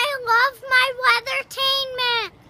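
A young boy singing alone, a few short syllables on nearly the same pitch followed by a longer held note near the end.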